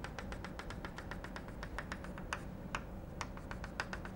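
Chalk tapping on a blackboard while a dotted line is drawn: a faint, irregular series of light clicks, several a second.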